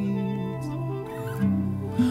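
Acoustic guitar chords ringing on between sung lines of a slow acoustic reggae song, changing to a new chord about one and a half seconds in.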